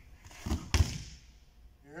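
A person dropping into a full-speed wrestling sprawl on grappling mats: two thuds on the mat about a quarter second apart, the second louder.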